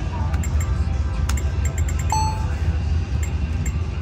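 Video poker machine sound effects: rapid short clicks and ticks as cards are held and dealt, and one brief electronic beep about two seconds in, over the steady low hum of a busy casino floor.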